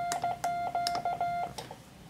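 Morse code sent on a BaMaKey TP-III iambic paddle: a steady mid-pitched sidetone beeping in short and long elements (dits and dahs), with light clicks as each element starts and stops. The sending stops about one and a half seconds in.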